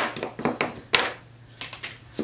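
Painted wooden blocks being handled on a cutting mat: several sharp knocks and taps as they are picked up and set down, the strongest at the start and about a second in.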